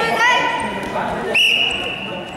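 A shout at the start, then a referee's whistle: one long, steady, high blast that starts suddenly a little past halfway and holds, stopping the wrestling bout.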